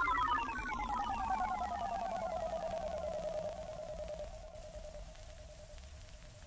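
The tail of an instrumental beat: a lone electronic tone slides slowly down in pitch and fades, levelling off into a faint steady note by about two-thirds of the way through.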